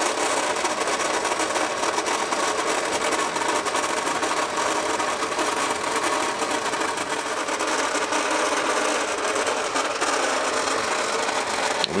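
Small battery-powered electric motor and plastic gear drive of a vintage Marx Big Alarm toy fire truck running steadily, raising the firefighter boom and basket.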